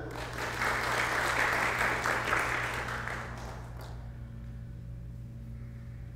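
Audience applauding for about three and a half seconds, then dying away, leaving a low steady hum.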